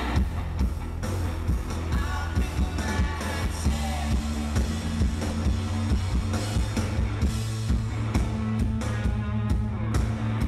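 A live rock band playing loud: electric guitar, bass guitar and drum kit, with a heavy, steady low end and regular drum hits, heard through the PA from the crowd.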